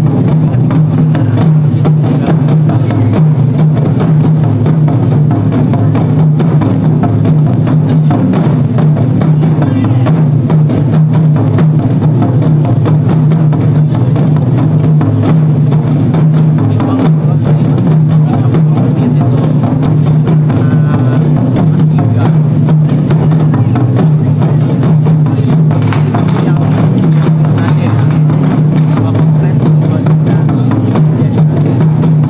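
A taiko ensemble beating many barrel-shaped drums with wooden sticks in a loud, dense, unbroken rhythm.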